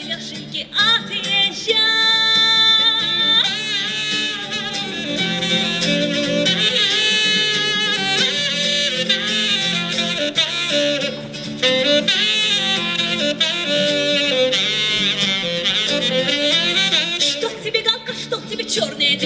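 Live saxophone playing a melody over acoustic guitar accompaniment, with a long held note about two seconds in and notes with vibrato after it.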